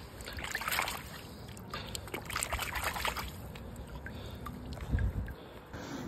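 Puddle water sloshing and trickling as small muddy bolts are swished through it by hand, in a few short splashy bursts, the first about half a second in and another around two seconds in.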